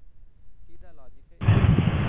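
A sudden loud burst of rushing noise through an online-call microphone, starting about one and a half seconds in and cutting off abruptly just under a second later. Faint speech comes just before it.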